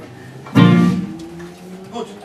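Electric guitar chord struck once about half a second in, ringing out, followed by a single held note sliding slowly upward.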